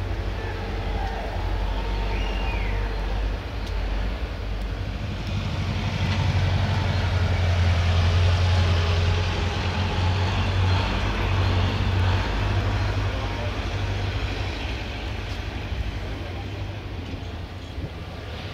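Low, steady rumble of a running engine. It swells to its loudest about halfway through and eases off toward the end, with voices in the background.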